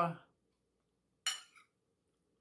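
A metal fork clinks once against a dinner plate a little past a second in, with a brief ring, as it scoops up food.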